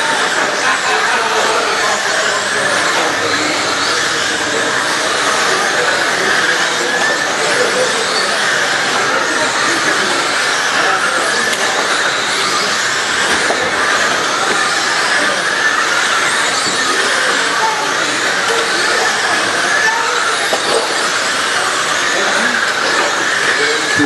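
Several radio-controlled dirt oval race cars lapping together, their motors giving a steady, high-pitched whine that wavers in pitch as they speed up and slow through the turns.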